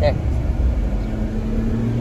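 Road and engine noise inside a moving car with a rear window down, a low steady drone setting in about a second in.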